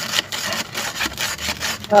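A hand tool scraping and digging through dry, crumbly red soil: a continuous gritty scraping made of many short strokes.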